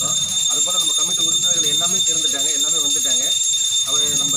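Men's voices talking, over a steady high-pitched whine of several constant tones.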